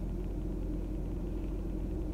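Steady low hum of a running car heard inside its cabin, even and unchanging, with a faint constant drone in it.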